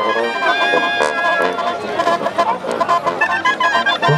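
Brass band music: trumpets and clarinets holding long notes, with percussion hits.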